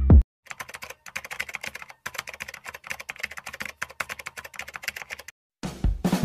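Rapid computer-keyboard typing clicks, a dense run of keystrokes lasting about five seconds with a couple of brief pauses.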